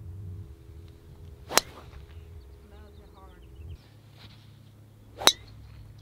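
Two golf drivers striking balls off the tee, each a single sharp crack, about four seconds apart; the second is a little louder.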